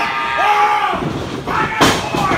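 A wrestler slammed down onto the wrestling ring mat: one loud impact near the end, after a second of shouting voices.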